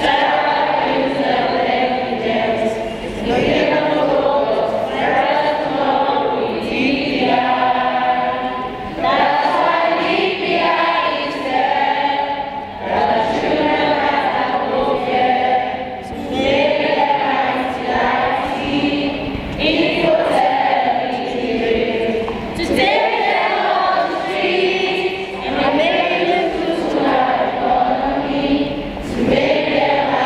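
A large group of children singing together in chorus, in long phrases with brief breaks between them.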